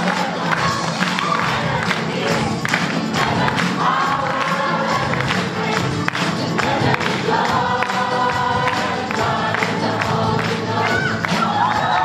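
A congregation and choir singing an upbeat worship song together over a steady beat.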